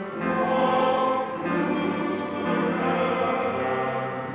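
Men's choir singing together, holding sustained chords that shift every second or so.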